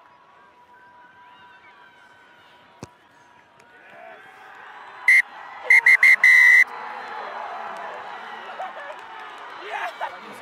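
Referee's whistle blown at the end of a rugby match: one short blast, then a quick run of blasts ending in a longer one. The full-time whistle comes as the last conversion goes over, and crowd cheering swells around it.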